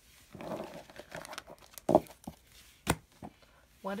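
Tarot cards being swept up from a cloth-covered table and stacked into a deck: a papery rustle and slide, then a few sharp taps as the cards are squared together.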